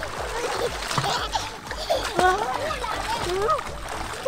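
Sea water splashing as a toddler is lifted and dipped in it, with short bits of a small child's voice over the splashing.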